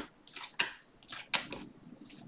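2021 Panini Mosaic football cards being flipped through by hand one at a time, each card sliding off the stack with a short click or swish, several in quick succession.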